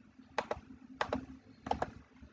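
Computer mouse clicking: three quick double-clicks, each pair of sharp clicks coming about two-thirds of a second after the last.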